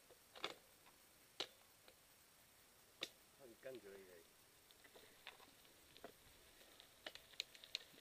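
Faint, sparse clicks and rattles from a mountain bike rolling down a dirt trail, about one every second or so. A short voice-like call comes about three and a half seconds in.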